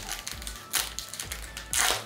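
Foil trading-card booster pack being torn open by hand, crinkling throughout, with a louder rip near the end.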